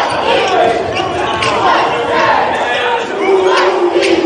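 Spectators' voices in a gymnasium during a basketball game, with a few knocks of the ball bouncing on the hardwood court, echoing in the large hall.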